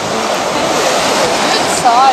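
Ocean surf washing onto the beach: a steady rush of breaking waves.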